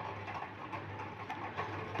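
A pause in speech: quiet room tone with a faint, steady low hum and a few faint ticks.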